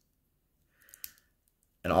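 Near silence broken by one small click about a second in: the plastic Irwin Toys Perfect Cell action figure being handled.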